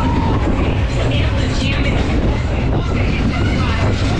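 A Tivoli Tip Top ride in motion heard from on board: a loud, steady low rumble of the spinning ride and rushing air, with voices mixed in.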